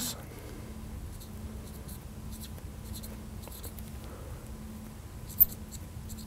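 Felt-tip marker writing on a glass lightboard: short, faint squeaks and strokes of the tip as the letters go on. A single sharp click comes a little past five seconds in, over a low steady hum.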